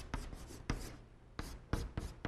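Chalk writing on a blackboard: a quick, uneven series of short scratching strokes and taps as Chinese characters are written.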